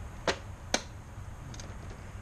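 Two sharp knocks about half a second apart as a desktop PC tower's metal case is tipped and set back down on a concrete driveway.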